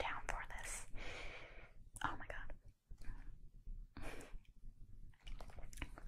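A woman whispering softly in short breathy phrases, with pauses between them.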